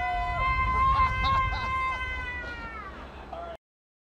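A man's long, high-pitched scream, held steady for about three seconds over a low rumble and then falling away, until it cuts off suddenly shortly before the end.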